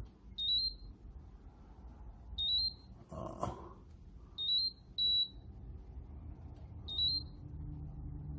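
Terumo infusion pump sounding its alarm: short, high electronic beeps about every two seconds, one of them doubled. The pump was started with no IV set loaded.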